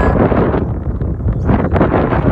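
Wind buffeting the microphone: a loud, ragged rumble.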